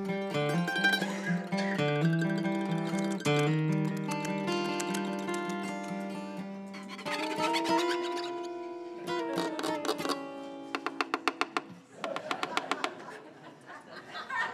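Mandolin and acoustic guitar playing an opening passage meant to sound like squirrel noises: held and bending notes, then a quick run of sharp percussive clicks late on.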